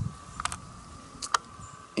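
A few short, faint clicks, the sharpest about two-thirds of the way through, over a faint steady whine.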